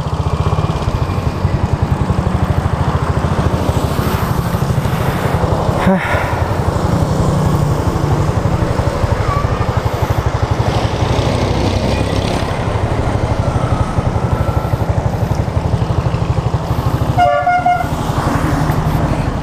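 Small motorcycle engine idling with a steady, fast low putter. A short horn toot comes near the end.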